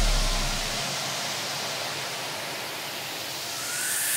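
A steady hiss-like rush of noise, as a deep bass tone dies away in the first second. A faint rising whoosh builds near the end.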